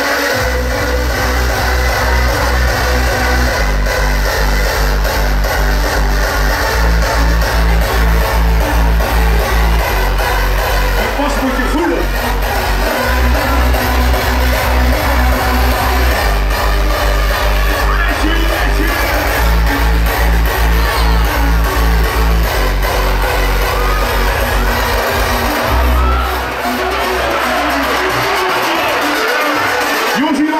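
Loud electronic dance music from a DJ set over a PA system, driven by a steady bass-drum beat that drops out briefly twice, with a crowd audible beneath it.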